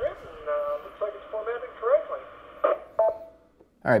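A voice coming over a Yaesu FT-8900 FM transceiver's speaker, thin and narrow-sounding, in short phrases that stop just before the end.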